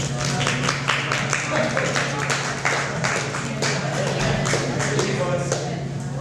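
Audience clapping: many dense, irregular hand claps, with voices among them, over a steady low hum.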